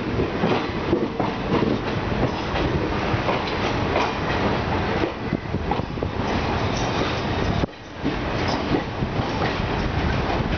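A passenger train running, its wheels clattering over rail joints, heard from an open coach doorway. The noise drops away briefly a little before the end.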